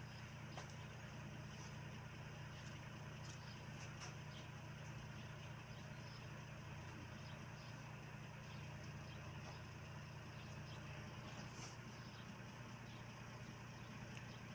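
A faint, steady low hum like an idling engine, with a few faint short clicks.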